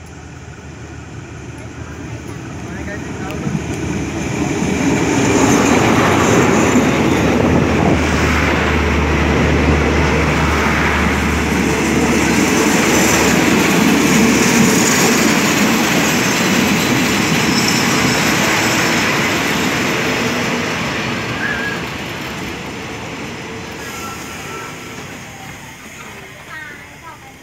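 Diesel-hauled passenger train pulling into a station. The locomotive and the wheels on the rails build up over the first five seconds as it comes alongside, then the coaches roll past with a loud, steady rumble that fades over the last few seconds.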